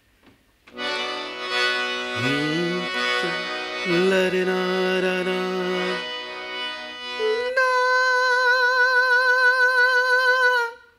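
A man sings a demonstration on a held 'naa': first a lower note in his normal chest voice, sliding up into it twice. About seven and a half seconds in, his voice jumps up into a high falsetto note with a wavering vibrato, held for about three seconds. This is the falsetto half of the yodel.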